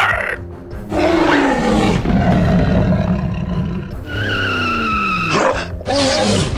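Dinosaur roar sound effect for a toy T. rex: a long call falling in pitch, then a second shorter falling call, over background music.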